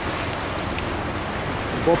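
Steady rushing noise aboard a river boat: wind on the microphone and water moving along the hull.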